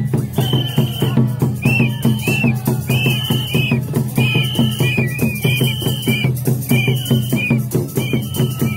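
Live Santhali folk music: a bamboo flute plays short, repeated high notes, some bending up and down, over fast, steady drumming.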